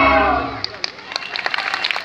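Recorded dance music fades out about half a second in, followed by scattered hand claps from the audience.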